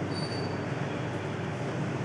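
Steady rushing background noise, even in level throughout, with a brief faint high tone just after the start.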